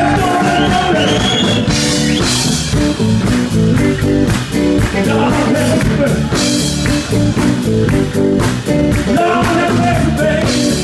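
Live blues band playing a steady groove: electric guitar over bass guitar and a drum kit.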